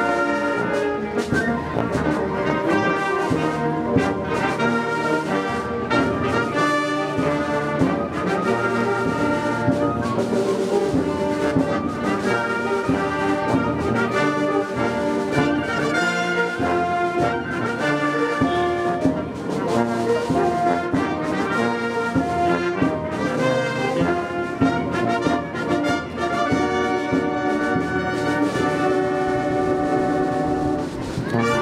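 A community concert band playing a piece live: brass instruments, trumpets and trombones among them, with a sousaphone on the bass, in continuous ensemble music.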